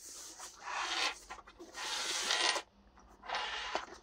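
Hands moving and rubbing a padded fabric laptop case and its strap on a desk: fabric rubbing and shuffling in four or so short stretches.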